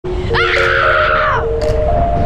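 A boy's high, excited scream that rises, holds for about a second and falls away, over low wind rumble on the microphone. Behind it, music plays sustained notes that step upward.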